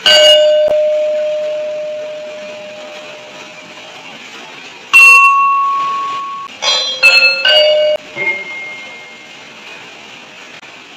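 Bars of a gamelan keyed instrument struck one at a time with a mallet, each note ringing on and fading slowly. A single low note opens and rings for several seconds, a higher note follows about halfway through, then a quick run of several notes near the end.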